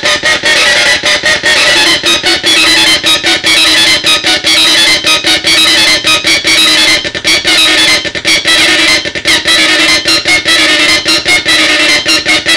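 Mega 4093 NAND gate drone synth, a 4093 NAND chip driven by four 555 timers, playing a loud buzzing drone that holds a steady low pitch, chopped by rapid, irregular cut-outs.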